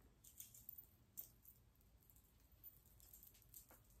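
Near silence: a few faint soft ticks and rustles of knit fabric being handled.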